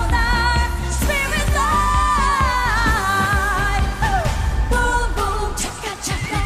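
Eurovision pop song playing: a woman singing long held, wavering notes over a steady beat and bass line, her voice sliding down about four seconds in.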